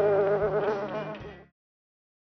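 Buzzing-bee sound effect: a loud, wavering drone that cuts off suddenly about one and a half seconds in.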